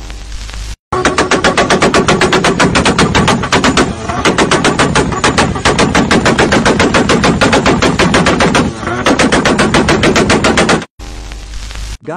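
A rapid, evenly spaced series of loud bangs, about eight a second, for about ten seconds, with two brief lulls. A short burst of even hiss comes just before it starts and again after it stops.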